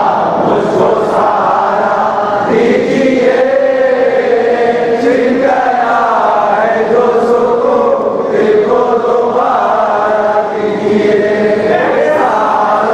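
A group of voices chanting a munajat, a devotional supplication, in long drawn-out melodic lines that rise and fall slowly.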